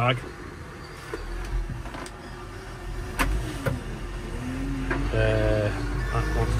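Telehandler engine running steadily, heard from inside the cab, with a few sharp clicks in the middle and a brief whine near the end.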